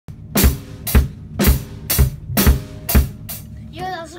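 A drum kit played by a child: six loud, evenly spaced hits about half a second apart, each with a heavy bass drum underneath, then a lighter seventh hit. A voice starts near the end.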